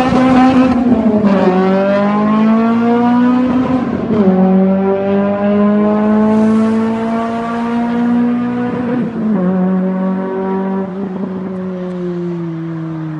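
A Honda Civic EP3 Type R's modified four-cylinder VTEC engine, with a 4-1 header and 70 mm exhaust, accelerates hard up through the gears. Its note climbs in pitch, drops sharply at upshifts about 1, 4 and 9 seconds in, then climbs again. The sound echoes in a tunnel and fades as the car pulls away.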